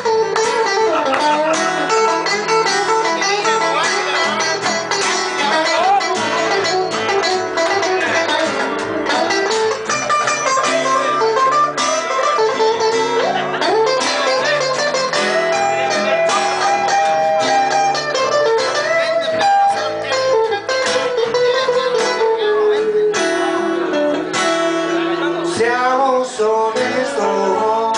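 Live blues band playing an instrumental passage: electric guitar playing a bending lead line over acoustic guitar and upright double bass.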